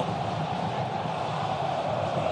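Steady crowd noise from a full football stadium, an even, continuous roar with no single event standing out.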